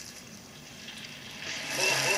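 Dry rice-stick noodles (rice vermicelli) hitting hot oil in a wok and frying as they puff up. The hiss starts faint and swells loud over the last half second.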